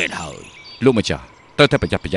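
Crickets chirping steadily in the background, with a voice heard three times: a falling, drawn-out sound at the start, then short bursts of speech around a second in and near the end.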